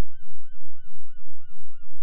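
An 808 bass sample in Maschine's sampler, triggered far below its root key, comes out as a weird repeating warble: a tone that swoops up and down about three times a second over a steady low drone.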